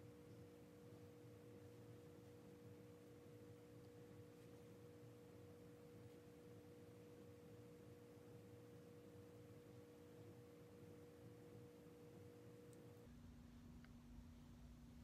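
Near silence: room tone with a faint steady two-pitched hum, which changes to a single lower hum near the end.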